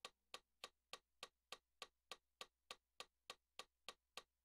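Metronome clicking faintly and evenly at a fast tempo, about three and a half clicks a second, with no piano notes sounding.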